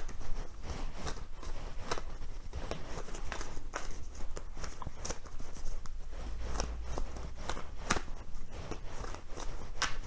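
Cards being shuffled and handled by hand, a run of irregular soft clicks and snaps, with a brief low rumble about six seconds in.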